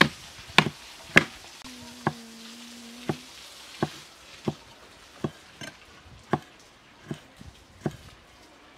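Steel cleaver chopping chili peppers on a wooden cutting board: a steady series of sharp knocks on the wood, about one every two-thirds of a second, loudest in the first second or so and softer after.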